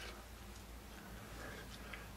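Quiet room tone: a faint steady low hum under light background hiss.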